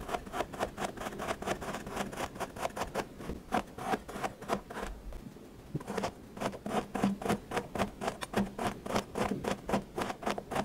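Kinetic sand crunching under a tool, a quick run of crisp scraping strokes about four or five a second, with a short pause near the middle.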